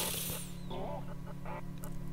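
A woman's breath drawn in sharply, then a faint, halting word and a few quiet, broken voice sounds over a low steady hum.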